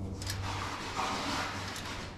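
Hands fitting metal steering-column parts, with light rustling and a few faint metallic clicks over a steady low hum.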